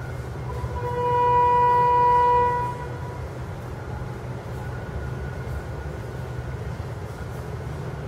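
A steady low drone, with a loud, horn-like sustained tone held at one pitch for about two seconds, starting about half a second in.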